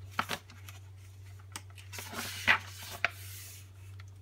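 A picture book's page being turned by hand: a few light taps, then a soft papery rustle with a sharper flick about two and a half seconds in. A low steady hum runs underneath.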